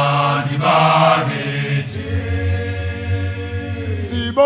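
An all-male a cappella choir singing in isicathamiya style: short chanted phrases for about two seconds, then one long low chord held through the second half.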